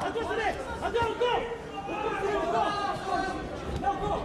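Several voices talking over one another, chatter in a large hall.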